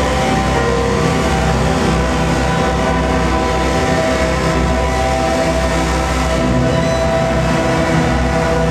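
Loud live music: a dense wall of long held chords over a steady low drone, without pause.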